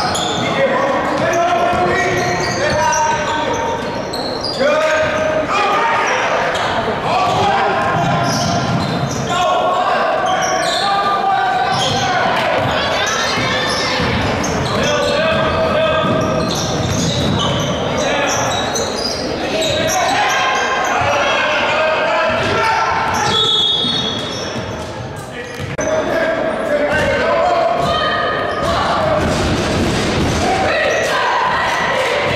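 A basketball being dribbled on a hardwood gym floor during live play, under steady shouting and talk from players, coaches and spectators, echoing in the gymnasium.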